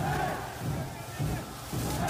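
Crowd of football supporters chanting together.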